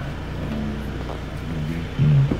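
Low, steady hum of a 2019 Hyundai Tucson's engine idling.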